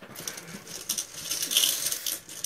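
Small hard jelly beans clicking and rattling against each other and the bowl as a hand stirs through them to pick one out: a quick, dense patter of tiny clicks.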